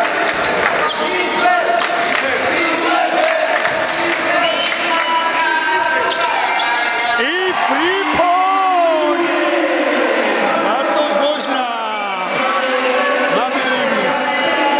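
A basketball bouncing on a hardwood court during play, with voices calling out throughout.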